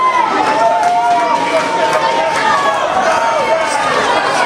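Many people talking at once: steady crowd chatter from a seated audience, with no single voice standing out.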